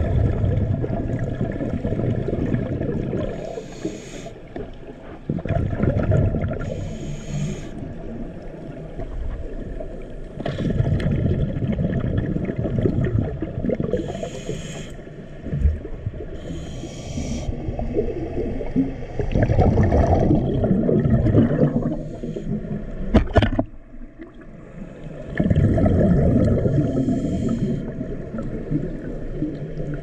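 Scuba diver breathing through a regulator underwater: bursts of exhaled bubbles rumbling for two to three seconds each, about every five or six seconds, with short hisses of inhalation between them. A single sharp click comes about two-thirds of the way through.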